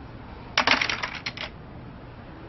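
A short, quick rattle of about ten sharp clicks lasting about a second, like small hard objects clattering.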